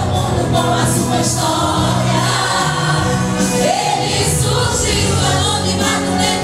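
A group of women singing a gospel song together, one leading through a microphone and PA, over instrumental accompaniment with sustained bass notes.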